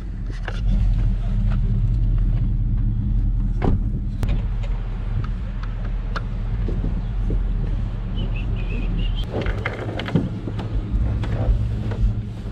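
Car engine idling in a steady low hum, with scattered knocks and clunks as a plastic kayak is handled up onto the car's roof rack.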